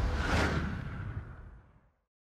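A whoosh sound effect of a logo transition about half a second in, over the ringing tail of theme music, fading out to silence near the end.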